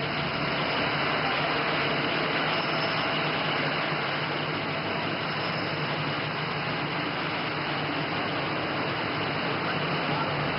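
Steady traffic noise from cars idling and moving along the curb, an even, unbroken wash of engine and road noise with a low hum underneath.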